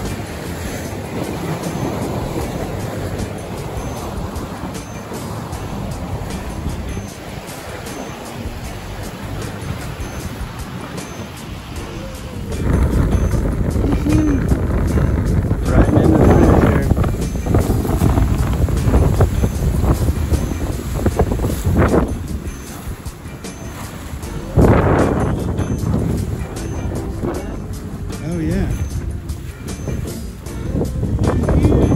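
Wind buffeting the microphone and water rushing along the hull of a small racing sailboat under way downwind in a strong breeze, getting louder and gustier about twelve seconds in.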